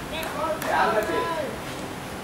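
A person's voice calling out, with a drawn-out call in the first half that the recogniser could not make out as words.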